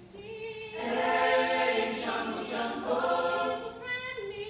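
Mixed high school choir singing, a cappella in sound. A softer passage swells into the full choir about a second in, and the sound eases again near the end.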